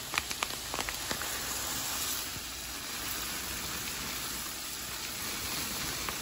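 Dry yellow rice poured from a bag into a saucepan of boiling coconut water and chicken broth: a steady, rain-like patter of grains falling into the bubbling liquid. There are a few sharp clicks in the first second.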